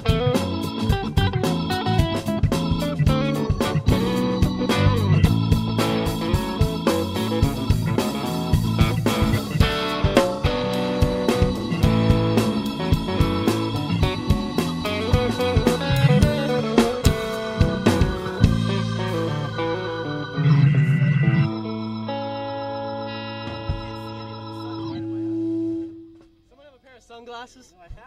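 Live rock band playing a song out: drums, bass, electric guitar and Hammond XK-3 organ together. Near the end the drums stop and a held chord rings on for a few seconds and then fades away.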